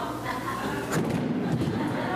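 Light cardboard boxes tumbling to the floor, with a thud about a second in.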